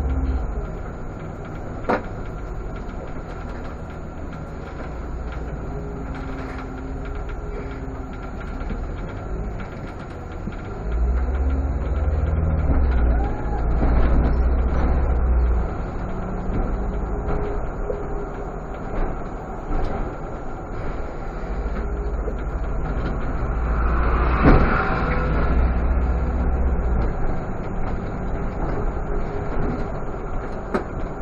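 Irisbus Citelis CNG city bus heard from the cab while driving: its natural-gas engine runs with a deep rumble over road noise and pulls harder twice, first about a third of the way through and again near the end. A short burst of noise comes about four-fifths of the way through, and a single click about two seconds in.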